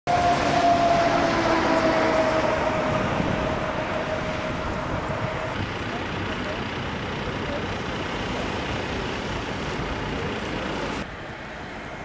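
Road traffic noise with a vehicle passing, its tone sliding slowly down in pitch over the first few seconds. The noise drops suddenly near the end.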